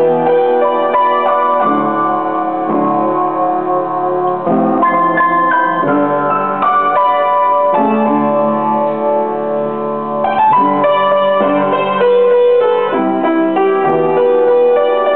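Upright piano played solo: a slow piece with a melody over sustained chords, new notes struck every second or so.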